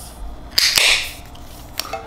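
Pull-tab lid of a metal spice-rub can popped open: a sharp snap about half a second in, followed by a brief rasp as the lid tears back.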